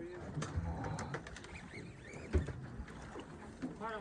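Quiet ambience on a small boat at sea: water sloshing against the hull, with a few brief knocks.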